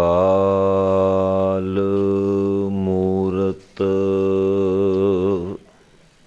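A man's voice intoning a long, drawn-out chant: one held note for about three and a half seconds, a brief breath, then a second held note that wavers before it stops shortly before the end.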